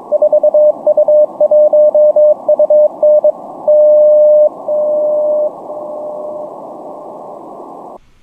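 The New York HF beacon of the NCDXF/IARU network (4U1UN) heard on 20 meters (14.100 MHz) through an Elecraft K4 transceiver in CW mode. It sends its Morse call sign as a steady tone of about 600 Hz over receiver hiss, then four long dashes at 100 W, 10 W, 1 W and 100 mW. Each dash is fainter than the one before, and the last is barely above the noise. The propagation to New York is good: a strong 100 watt signal.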